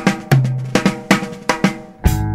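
Solo drum kit opening a jazz track: snare and drums struck in a quick, uneven pattern, about eight hits, each ringing briefly.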